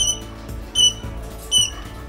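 Eastern rosella giving short, high whistled calls, three evenly spaced notes about a second apart, over background music.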